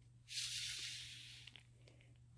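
A breath blown through a drinking straw onto wet acrylic paint to push it across the canvas: a soft hiss that starts a moment in and fades away over about a second.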